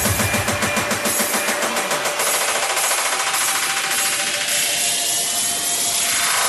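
Frenchcore/hardcore electronic music build-up: a rapid, dense percussion roll. The low kick pulses drop out about two seconds in, and a rising sweep climbs through the rest.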